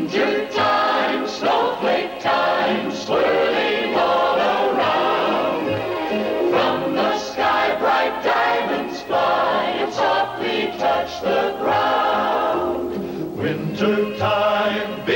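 Soundtrack song: a choir singing with musical accompaniment.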